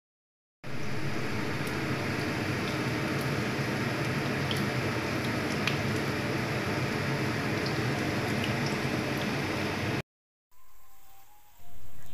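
Corn fritters frying in hot oil: a steady sizzle with scattered small pops, cut off suddenly near the end.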